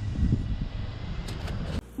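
Low, steady outdoor rumble that cuts off suddenly near the end.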